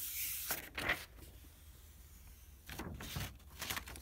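A hand rubbing a sheet of paper against a paint-covered homemade gelli plate, with a soft brushing hiss that stops about half a second in. Near the end comes a soft peeling sound as the paper is lifted off the gel surface.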